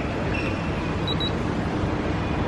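Steady low rumble of background noise, with two very short high electronic beeps in quick succession about a second in.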